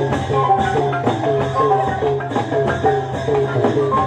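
Traditional Burmese nat pwe (spirit festival) ensemble music: a melody of short notes that bend in pitch, over a steady quick beat of percussion strokes and a low sustained drone.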